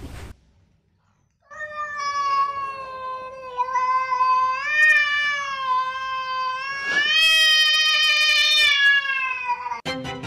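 A cat giving one long, drawn-out meow of about eight seconds, starting a second or so in, its pitch wavering and rising twice along the way.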